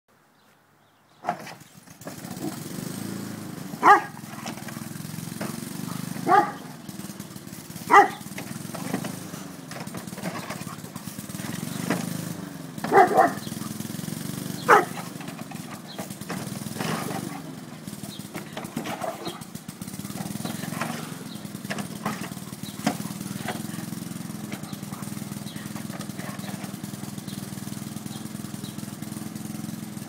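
Dutch Shepherd x German Shepherd dog barking in single barks every few seconds, loudest in the first half, over the steady hum of a running lawn mower engine.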